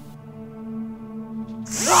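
Low, steady music drone. Near the end a power drill suddenly spins up loud with a rising whine.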